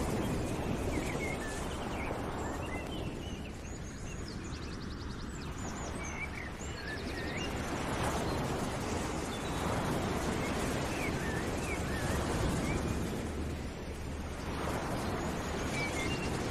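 Birds chirping in many short calls over a rushing outdoor noise that swells and fades every few seconds, with a couple of brief fast high trills.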